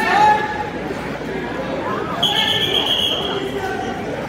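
Crowd and coaches shouting in a gym, then a referee's whistle blown once, a steady high tone lasting about a second from about halfway through, the signal to stop the wrestling.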